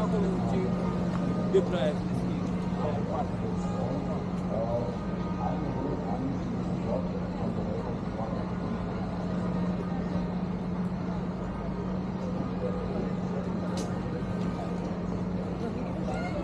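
City street ambience: a steady low hum under the faint, indistinct voices of passers-by, with one sharp click about one and a half seconds in.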